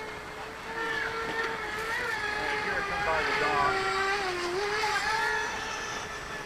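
RC seaplane's Spin Max 2810 brushless motor driving an 8x6 three-blade propeller in flight, a steady whine that wavers a little in pitch, dips about four and a half seconds in and then rises again.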